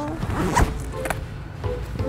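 Zipper on a small black bag being pulled open, a short rasp about half a second in.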